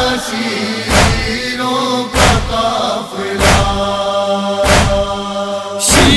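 A backing chorus of voices chanting a held, sustained melody in a noha (Shia lament), with a deep thump marking the beat about every second and a quarter, five times.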